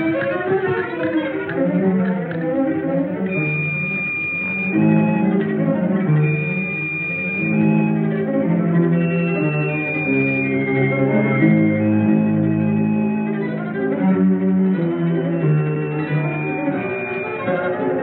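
Orchestral film score led by bowed strings, playing long held notes: low string chords shifting every second or two beneath several high held tones.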